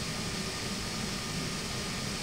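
Steady background hiss with a faint low hum, even throughout.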